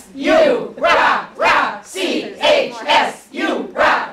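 A group of women chanting a school cheer in unison, "C-H-S, U, rah rah", with about two shouted syllables a second.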